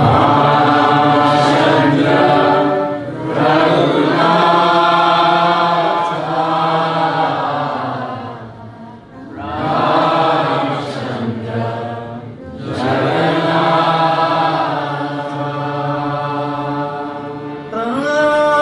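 A man chanting a devotional kirtan in long held phrases with short breaks between them, over a sustained harmonium accompaniment.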